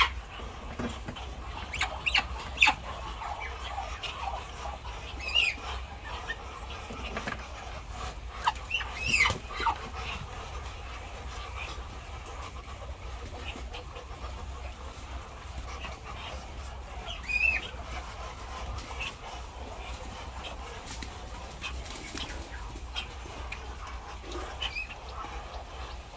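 Scattered short, high calls from animals in a poultry pen, a few seconds apart, over a steady low rumble, with light knocks as eggs are handled.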